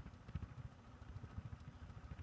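Handling noise from a handheld microphone as it is passed from one person to another: faint, irregular low rumbling with soft knocks and thumps.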